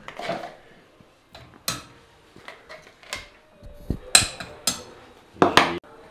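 Kitchen clatter: a metal spoon and a glass spice jar clinking against a steel saucepan on the stove, a handful of separate sharp clinks a second or so apart.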